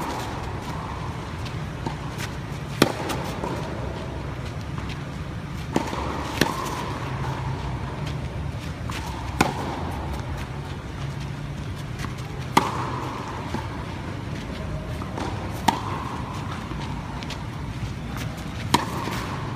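Tennis racket striking the ball on topspin forehands: a sharp pop about every three seconds, five in all, each with a short ringing tail. Fainter knocks come between the hits, over a steady low hum.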